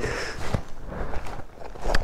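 Footsteps crunching on loose gravel and stones, with a single knock about half a second in.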